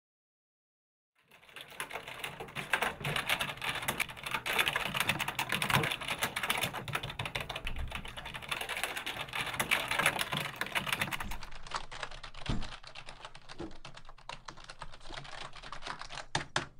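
Fast, continuous typing on a computer keyboard, dense key clicks starting after about a second of silence and thinning out near the end.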